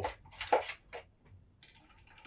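A metal straw clinking against ice cubes and the glass as it is pushed into an iced highball drink: a few short clinks, mostly in the first second, then fainter ones.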